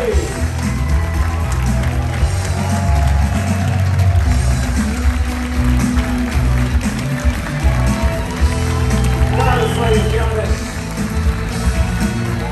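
Band music with a strong, steady bass line, with a voice briefly rising over it about nine and a half seconds in.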